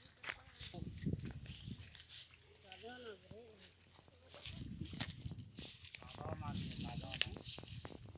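Voices calling out now and then, with low wind rumble on the microphone and a sharp knock about five seconds in.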